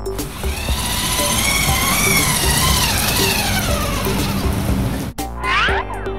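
Electronic background music: a noisy synth sweep with wavering tones, broken off about five seconds in by a quick rising glide like a cartoon sound effect.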